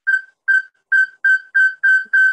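A high, whistle-like tone pulsing at one steady pitch: about six short notes, coming faster and lasting longer, from about two a second to four a second.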